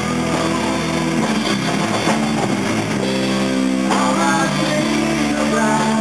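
Live rock band playing: electric guitar over bass guitar and a drum kit.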